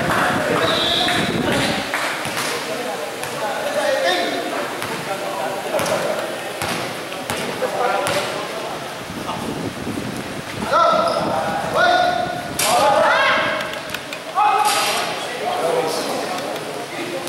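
Basketball bouncing on an indoor court amid players' voices and shouts ringing in a large hall. The shouts are loudest in the second half.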